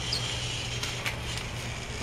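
Battery-operated Trackmaster Thomas toy train running along plastic track: a steady motor whir with a few faint clicks.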